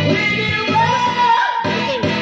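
A woman singing into a microphone over amplified backing music, holding one long note through the second half.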